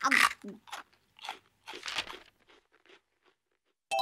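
Rice cracker (senbei) being bitten and chewed: crisp crunches about twice a second, growing fainter and dying away after about three seconds.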